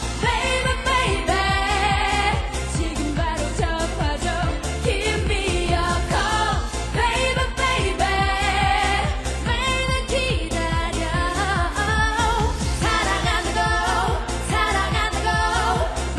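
Korean pop song: a female vocal duo singing over a full backing track with a steady beat.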